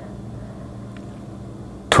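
Quiet background between words: faint microphone hiss with a low steady hum and one small tick about a second in. A man's voice starts again at the very end.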